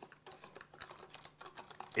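Quiet, irregular light clicks and taps from hands working at a small plastic pot and a plastic tray of soaked owl-pellet bones and fur, over a faint low steady hum.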